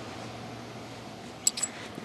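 Room tone: a steady low hiss, with one short click about one and a half seconds in.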